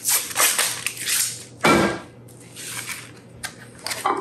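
A tube of refrigerated crescent roll dough being opened: the paper wrapper peeled off in rustling tears, then one louder pop a little under two seconds in as the can bursts open.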